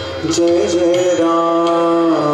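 Indian devotional chant music: a voice holds a long, steady note over the accompaniment, with light high ticks. The low tabla drumming drops out for most of the stretch.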